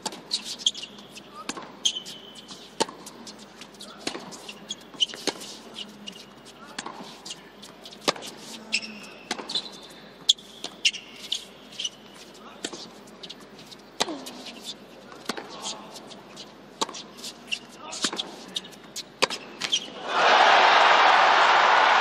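Tennis rally on an indoor hard court: racket strikes on the ball roughly once a second, with shoe squeaks on the court between them. About twenty seconds in, the crowd breaks into loud cheering and applause as the match point is won.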